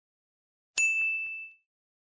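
A single high-pitched ding sound effect about three-quarters of a second in. It rings out and fades away within about a second.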